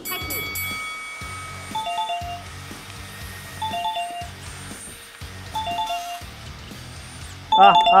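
Background music with a low steady beat and a two-note chime that repeats about every two seconds. A man starts yelling loudly near the end.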